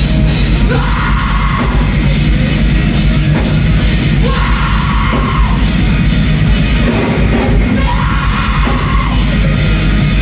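A rock band playing live and loud, drums and amplified instruments running steadily, with shouted vocal lines coming in three times, about every three and a half seconds.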